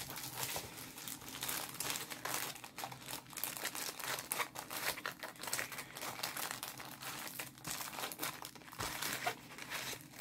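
Plastic packaging of a rolled diamond painting kit crinkling and rustling as it is handled, a busy run of irregular crackles that thins out near the end.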